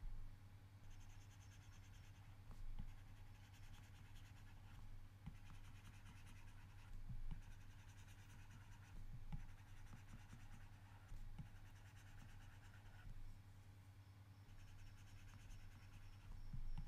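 Faint scratching of a stylus scribbling on a tablet's glass screen, in short spells a second or two long with light taps in between. A low steady hum lies under it.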